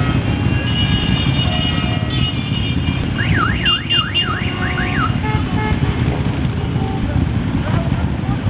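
Motorcycle engines rumbling steadily as a line of bikes rides slowly past. Between about three and five seconds in, an electronic siren-like sound warbles rapidly up and down, about six times.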